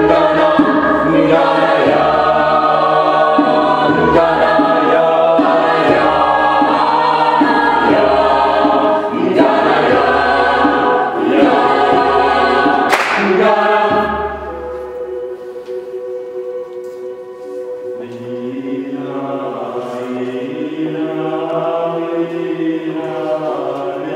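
Choir singing a cappella in layered, chant-like lines over a low sustained drone. About two-thirds through the singing drops quieter and the drone stops, and lower voices come back in near the end.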